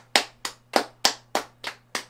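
Hand clapping: slow, even claps at about three a second.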